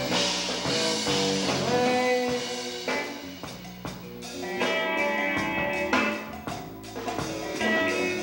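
Live rock band playing an instrumental passage on electric guitars and drum kit. It drops back a little before the middle and builds again at about four and a half seconds.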